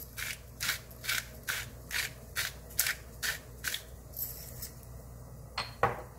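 Salt being dispensed into a pot of soup from a salt dispenser in a run of short, evenly spaced strokes, a little over two a second, that stop about four seconds in; a single click follows near the end.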